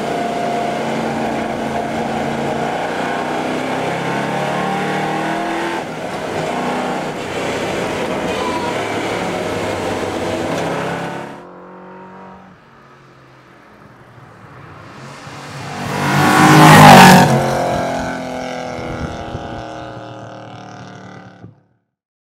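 Sports car engine running hard, its pitch shifting, with a change about six seconds in; it cuts off abruptly after about eleven seconds. Then a car approaches, passes by loudly about seventeen seconds in, and fades away.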